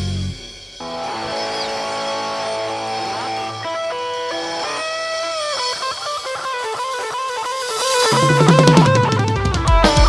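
Live band playing an instrumental passage: a guitar melody with bent notes over sustained chords, after a brief drop in the music at the start. Drum kit and bass guitar come back in about eight seconds in and the music gets louder.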